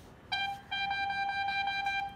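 A steady high-pitched tone, held for over a second, with a short break just after it starts.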